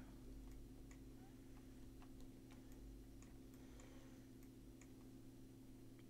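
Near silence: a steady low electrical hum with a few faint, scattered clicks of a computer mouse.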